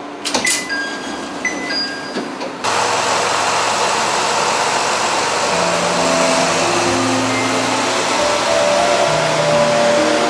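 A few short electronic beeps inside the train at first, then a sudden change to a Jōsō Line diesel railcar running at the station platform: a loud, steady engine noise with low tones that shift in pitch in steps.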